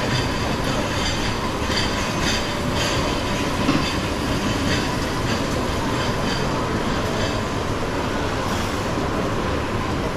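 Steady din of a busy buffet restaurant: a constant loud rumbling hum with scattered light clinks of crockery and cutlery.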